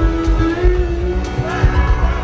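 A live band playing loud music: electric guitar over heavy bass and drums with a steady beat.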